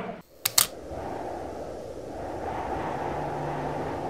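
Two sharp clicks close together about half a second in, then a steady low rumbling drone, with a low hum joining near the end: an edited-in sound bed under a title card.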